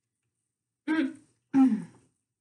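A woman clearing her throat in two short voiced bursts, starting about a second in, the second falling in pitch.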